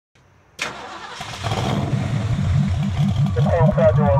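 A car engine starting with a sudden burst about half a second in, then running with an even pulse about four times a second. A brief pitched, voice-like sound comes in near the end.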